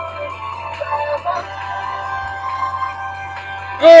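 Song playing back from a laptop, with long held tones. Near the end the playback glitches: a loud sound slides steeply down in pitch, which the host puts down to the laptop 'chunking' and getting 'glitchy'.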